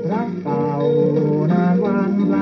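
A Thai ramwong dance song playing from a 78 rpm shellac record on a turntable: an old band recording with sustained melody notes over a steady accompaniment, its treble cut off as is usual for a 78.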